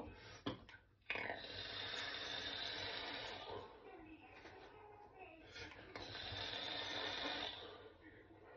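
Steady hiss of air drawn through a single-coil vape and of vapour blown out, in two long stretches: one starting about a second in, the other from about six seconds in.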